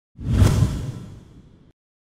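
Whoosh sound effect with a low boom. It swells up in a fraction of a second and fades away over about a second.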